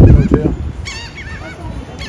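Gulls calling over and over, a string of short arched cries. A loud low rumble fills the first half-second.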